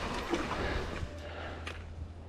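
Mountain bike rolling over a dirt forest trail: an even tyre-and-riding noise with a few sharp rattles from the bike, the first near the start and one near the end.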